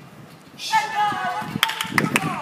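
A loud shout from a man, starting about half a second in and held to the end, with a few sharp knocks near the end.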